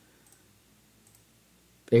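Faint clicks of a computer mouse button.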